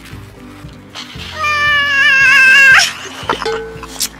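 Background music, with a loud, high, wavering voice-like note held for about a second and a half in the middle, ending in a quick upward slide.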